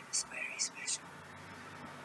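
A person whispering, with four short hissing s-sounds in the first second, then a low steady hum that sets in about a second in.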